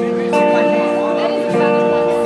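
Live jazz quartet playing, with a guitar sounding held chords that change about a third of a second in and again about a second and a half in.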